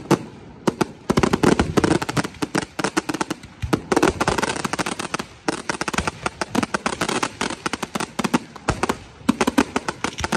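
Aerial fireworks display: a rapid, dense barrage of sharp cracks and bangs from bursting shells, many a second, with a brief lull just after the start.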